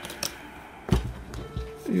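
Soft knocks and taps of game cards and pieces being handled on a tabletop, a few strokes with the loudest about a second in, as cards are drawn.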